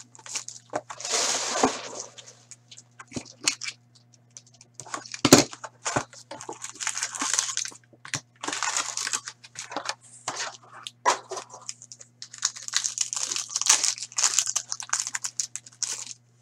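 Plastic wrapping and foil card-pack wrappers crinkling and tearing, with the cardboard card box handled and opened, in repeated irregular bursts. A sharp knock about five seconds in is the loudest sound, over a faint steady hum.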